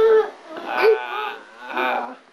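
A toddler's high-pitched cries and whines: one held note at the start, a wavering cry about a second in, and a short cry near the end.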